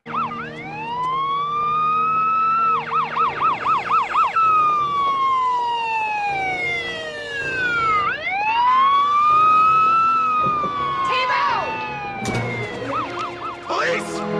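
Police siren from a TV drama soundtrack wailing slowly up and down in long sweeps, switching about three seconds in, and again near the end, to a fast yelp of about four warbles a second.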